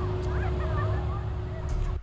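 A large clock-tower bell's hum dying away after a strike, over a steady low outdoor rumble, with a few short bird calls in the first second.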